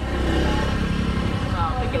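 A motorbike engine running close by: a steady low hum, with a voice coming in near the end.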